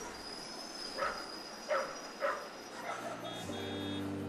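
Quiet ambient interlude in a lofi mix: a soft hiss with a thin high steady tone, broken by four short, sharp calls about half a second apart. Sustained keyboard chords fade in about three and a half seconds in.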